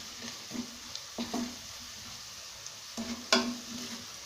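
Onion, garlic and green-chilli masala with turmeric and red chilli powder sizzling in oil in an open pressure cooker while a wooden spatula stirs it. The spatula scrapes the pan a few times, loudest just after three seconds in.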